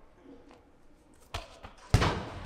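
A 4 kg throwing shot thrown hard into a hanging tarp, hitting it with one sharp thud near the end that echoes through a large hall, after a softer thump a little earlier.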